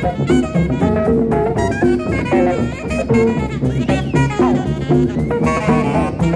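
A live jazz quintet of alto saxophone, tuba, electric guitar, cello and drum kit playing a busy passage, with melodic lines moving over frequent, regular cymbal and drum strokes.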